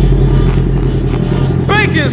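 Motorcycle engine idling steadily while stopped, under rap music; a rapped or sung voice comes in near the end.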